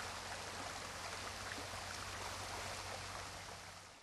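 Steady rushing hiss of outdoor field audio, like running water, over a low hum, fading out near the end.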